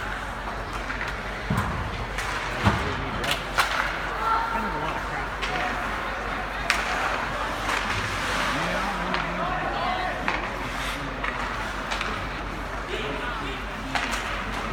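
Ice hockey play: sharp clacks of sticks and puck on the ice and boards every few seconds, over the indistinct voices and calls of spectators and players in the rink.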